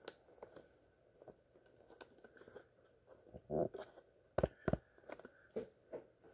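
Hands handling objects at a desk: scattered light clicks and crinkling rustles, with two sharper knocks about four and a half seconds in.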